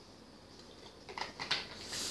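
Faint room tone, then, from about a second in, a few short clicks and breathy sounds as a child finishes drinking from a plastic bottle and lowers it.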